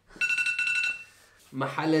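A short electronic alarm-like beep: one steady high tone lasting just under a second, then a voice.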